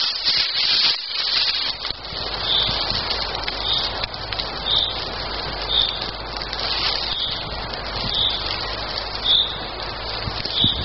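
A small fire of twigs and bark tinder catching, with rustling and handling noise over it. A bird repeats a single short high note about once a second.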